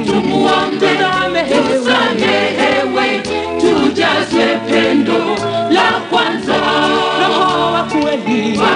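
Gospel song sung by a group of voices in harmony, with steady low notes underneath.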